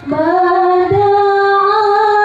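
A high solo voice singing a melody in long held notes, with a short rising slide into the first note at the start.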